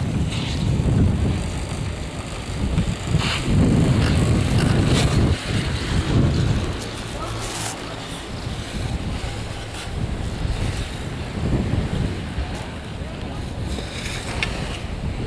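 Wind buffeting the camera microphone in gusts on a moving chairlift, heaviest in the first half and easing after that. A few sharp clicks come through the wind.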